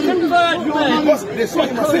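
Speech only: several men talking over one another in a heated argument.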